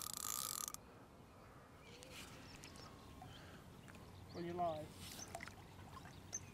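Fixed-spool carp reel being wound in while playing a hooked carp: a whirring with a thin steady whine that cuts off suddenly less than a second in. Then it is quiet, apart from a brief voice about four and a half seconds in.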